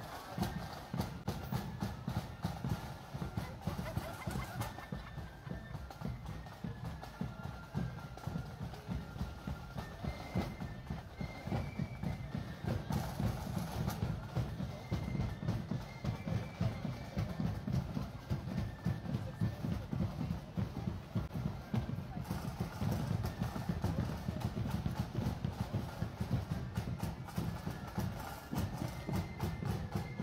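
Marching band playing as it parades: a fast, dense drum beat under a high melody line.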